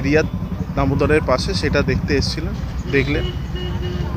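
A man speaking over a steady low rumble. About three seconds in, a steady high tone comes in and holds.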